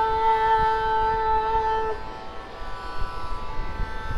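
A woman's voice holds one long, steady note on the tonic Sa, pitched at A, closing a Carnatic jathiswaram in raga Kamboji; the note stops about two seconds in. A steady shruti drone carries on underneath.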